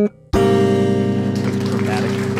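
Instrumental music ending on a single held chord: after a brief gap, the chord sounds about a third of a second in and rings on steadily. It is the deliberately 'wrong' final note that ends the piece.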